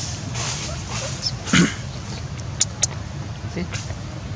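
A macaque gives one short, loud call about one and a half seconds in, over a steady low background rumble; two brief sharp clicks follow a second later.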